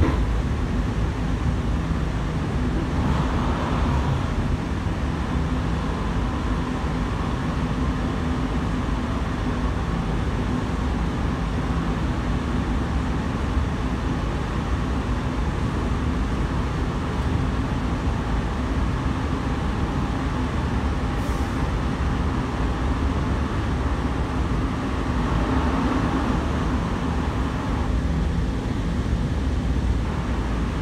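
Interior running noise of a Sydney Trains K-set double-deck electric train at speed, heard from inside the carriage: a steady rumble of wheels on rail with a faint hum. A brief rise in higher-pitched noise comes about three seconds in and again near the end.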